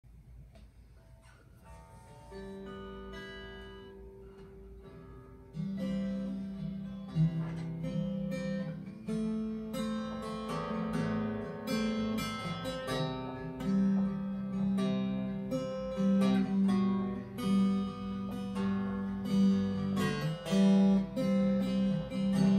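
Acoustic guitar playing a song's instrumental introduction: a few quiet picked notes at first, then fuller strumming in a steady rhythm from about six seconds in.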